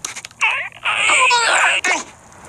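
Wordless, crying vocalising from a cartoon sabre-toothed squirrel: a couple of clicks, then two short cries, the second breaking into a quavering warble.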